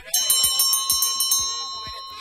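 A bell sound effect for a notification bell: a bright, high bell struck rapidly, about eight strokes a second, for a little over a second. It then rings on and fades away.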